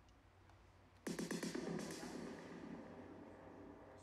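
Electronic snare fill played back in Ableton Live through an Echo effect on the 'Diffused Long Cascades' preset: a rapid run of snare hits starts suddenly about a second in and fades away over the next three seconds in a long, diffuse echo tail.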